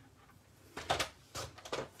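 Paper trimmer's blade carriage drawn along its rail, slicing a narrow strip of cardstock: a few short scraping strokes starting about a second in, the first the loudest.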